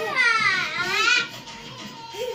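A young child's high-pitched squeal lasting just over a second, its pitch dipping and then rising again.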